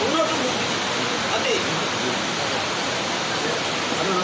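Indistinct voices of a close crowd over a steady rushing noise.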